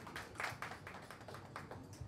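Faint, scattered hand claps from a small group applauding, thinning out near the end.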